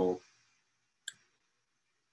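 The end of a man's spoken word, then near silence broken by a single short click about a second in.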